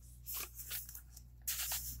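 Faint rustling of paper as the pages of a handmade junk journal are turned and handled, a few soft rustles with a longer one near the end.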